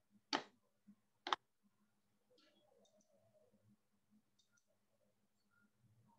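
Two sharp clicks of a computer mouse button, about a second apart, over a faint steady low hum; otherwise near silence.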